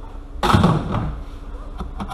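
Ribbed rubber joiner hose of a Ford Focus ST225 intake being twisted and pulled free of its plastic airbox feeds: a sudden scrape and rustle about half a second in that fades over about half a second, with a light click near the end.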